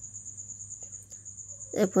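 A cricket trilling steadily at a high pitch, with a couple of faint clicks about a second in.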